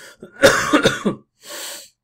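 A man coughing: a hard cough of several quick bursts about half a second in, then a shorter, quieter noise near the end.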